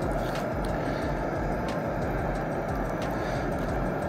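Camp stove burner running steadily under a pot of simmering soup, with a spoon stirring it and a few light clicks against the pot.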